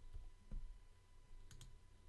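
Near-quiet room tone with a faint low hum and a quick pair of faint clicks from the computer being worked, about one and a half seconds in.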